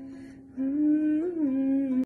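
A woman humming a held melody note. It grows louder about half a second in, rises briefly in pitch and settles back down.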